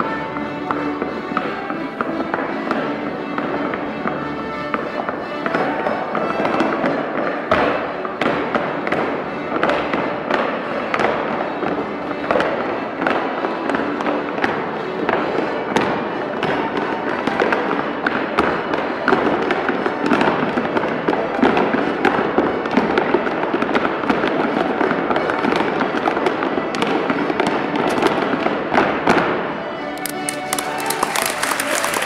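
Wooden-soled clogs striking a hard floor in a rapid stream of taps and clicks during a clog dance, over accompanying music. The stepping stops just before the end.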